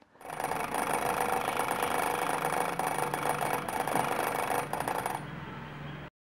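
Homemade electric bell buzzing: its galvanised iron strip chatters rapidly against a copper wire contact as an electromagnet wound on a sewing-machine bobbin pulls it in, breaking the circuit and letting it spring back to remake it over and over. After about five seconds it drops to a fainter rattle, then stops.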